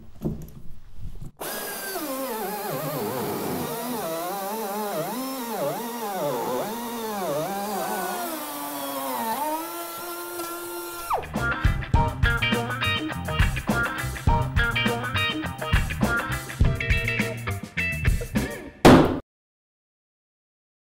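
Pneumatic flush-trim router with a bearing-guided bit cutting through an OSB bracing panel along the edge of a framed opening. Its whine repeatedly dips and recovers in pitch, holds steady, then stops abruptly about 11 seconds in. Outro music with a plucked-guitar beat follows for the next eight seconds.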